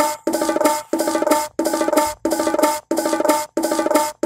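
A bongo sound unmixed from a drum loop by Regroover Pro, played on a short loop: the same pitched hand-drum fragment repeats about every two-thirds of a second, with a brief break at each restart. It is soloed and being run through the plugin's compressor.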